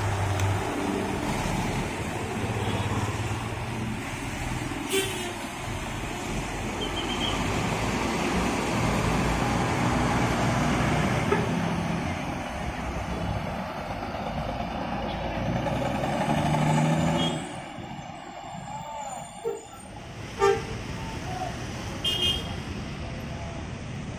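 Large coach diesel engines running as the buses idle and move through a bus terminal, amid traffic noise. The sound drops abruptly after about seventeen seconds to a quieter background with a couple of sharp knocks.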